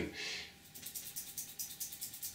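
Tomato seeds rattling inside two small plastic containers with yellow caps as they are shaken, a quick, even run of soft, light rattles.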